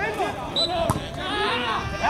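Spectators' voices shouting and chattering, with one sharp thud of a football being kicked about a second in.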